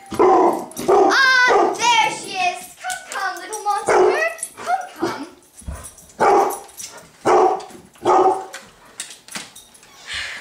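A dog barking repeatedly, a bark about every second, with a higher rising yelp about a second in.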